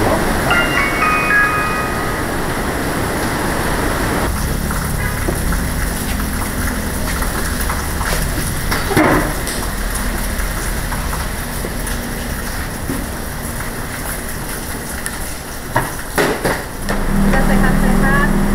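Heavy rain hissing steadily for the first few seconds, with a few short, high chime-like notes stepping down in pitch about half a second in. After that it is quieter, with a faint steady hum and a couple of brief knocks.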